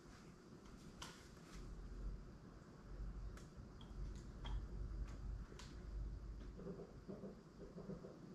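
Quiet room tone with a low rumble and a handful of faint, scattered light clicks.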